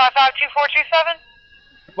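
Speech heard over a telephone line: a voice talks for about a second, then pauses, leaving a few faint steady tones on the line.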